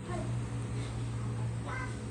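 Steady low electrical hum and room noise from an open microphone, with a brief faint pitched sound near the end.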